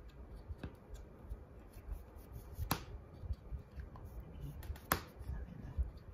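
Quiet tabletop handling while painting: brushes and small plastic paint and glitter pots give a few sharp clicks, two louder ones about halfway and near the end.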